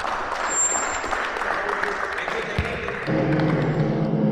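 A crowd clapping and talking in a large hall. About three seconds in, music with long held tones starts.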